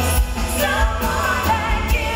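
Live pop-rock band performance: a woman sings lead with a wavering, sustained melody over drums, cymbals and bass.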